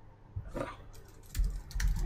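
Typing on a computer keyboard: a handful of separate key clicks at an uneven pace, with a low thump in the second half.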